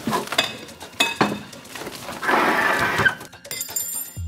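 Kitchen clatter of pots, bowls and utensils: several sharp clinks and knocks, then a louder, noisy rush lasting under a second a little past the middle.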